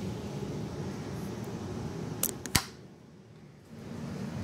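Steady room hum from a fan or air conditioner. About two and a half seconds in, the camera being picked up and handled gives a few sharp clicks, and the hum briefly dips.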